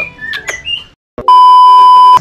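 Caged songbirds chirping briefly, then a sudden cut to silence, followed by a loud, steady electronic beep held for almost a second.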